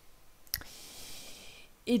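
A single computer mouse click about half a second in, followed by about a second of soft hiss.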